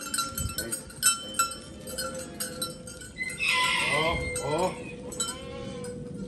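Goats bleating: one loud call about three seconds in, then shorter quavering bleats. Sharp metallic clinks come through the first half.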